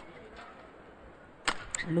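Faint background noise of an indoor sports hall, then a sharp knock about one and a half seconds in and a second, smaller one just after, before a man's voice starts.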